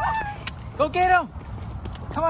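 Intro music ends in the first half-second. About a second in, a bird gives one short, loud call that rises and then falls in pitch.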